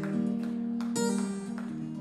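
Electric guitar strumming ringing chords, with a new chord struck about a second in.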